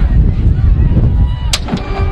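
Marching band's show opening: about one and a half seconds in, a sharp percussion hit, with held band notes following right after it. Before the hit there is a low, uneven rumble.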